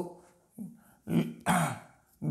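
A man clearing his throat in two short voiced bursts, a little over a second in.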